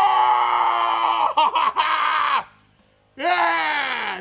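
A man's long, high scream, held steady and then wavering and breaking up after about two seconds. After a brief gap, a second cry slides down in pitch near the end.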